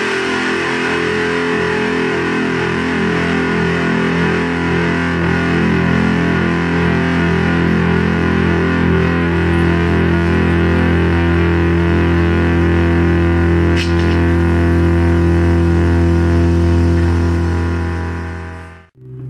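A single distorted electric guitar chord left to ring, held steady at full volume and fading out near the end.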